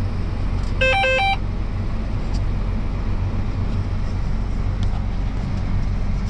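Low, steady drone of a John Deere self-propelled sprayer's engine heard inside the cab. About a second in comes a brief electronic chime of a few short notes, ending higher.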